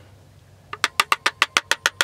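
Plastic pickup-truck dome light housing being knocked with a screwdriver to shake loose the dirt packed inside. It gives a fast, even run of sharp clicks, about ten a second, starting about three-quarters of a second in.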